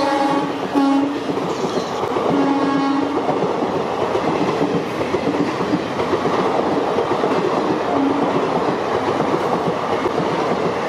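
Express passenger coaches rolling past at speed with a steady clatter of wheels on rail joints. The hauling WAG-7 electric locomotive's horn sounds briefly about a second in and again for under a second around two and a half seconds in.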